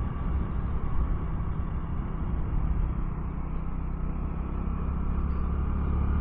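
A 2024 Honda Navi's small single-cylinder engine running steadily at a low cruising speed, heard as an even low rumble mixed with wind and road noise, with a faint steady whine on top.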